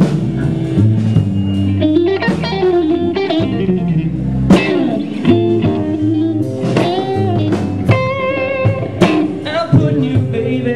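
Live rock band: a Stratocaster-style electric guitar plays an instrumental lead with bent notes and vibrato, over electric bass and a drum kit.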